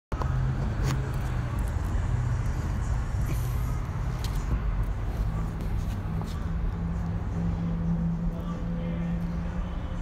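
Steady low hum of a running engine, its pitch stepping up about halfway through, with a few faint clicks.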